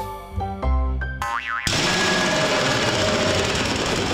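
Cartoon music of short stepping notes, ending about a second and a half in with a quick wobbling rise in pitch. Then a loud, noisy, wavering cartoon sound effect, boing-like, takes over until the end.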